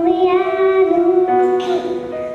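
A young girl singing into a handheld microphone over a backing track: one long held note with vibrato, then a move to a lower note about a second and a half in.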